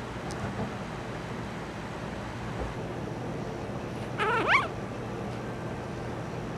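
A one-week-old Cavalier King Charles Spaniel puppy whimpers once, about four seconds in: a short wavering squeak that rises sharply at the end. A steady low hiss runs underneath.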